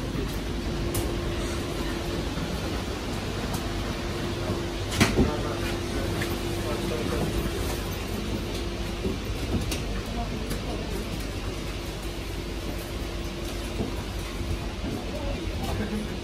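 Steady hum inside an airport jet bridge beside a parked airliner, with a faint held tone that comes and goes and a sharp knock about five seconds in.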